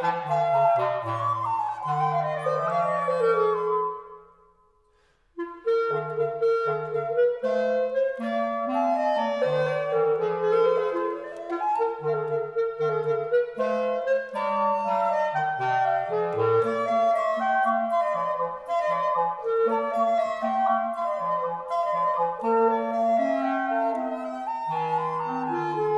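Classical trio of period woodwinds, flute, clarinet and basset horn, playing an Allegretto movement, with the basset horn carrying a low line under the clarinet and flute. About four seconds in the music stops, and it resumes a second or so later.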